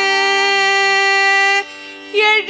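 Female voice singing a devotional bhajan, holding one long steady note for about a second and a half and then breaking off, leaving a quieter steady drone underneath.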